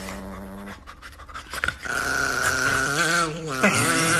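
A chihuahua howling in a high, wavering pitch from about two seconds in, with a man's lower voice howling along with it near the end.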